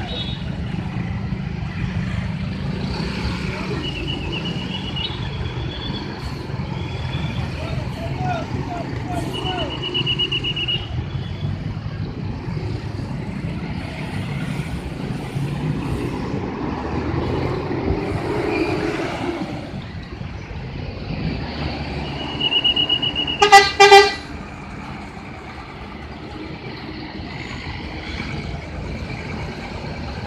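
Street traffic with heavy vehicles running, broken by short high-pitched horn beeps a few times. Near the end come two short, loud blasts of a bus horn, the loudest sound.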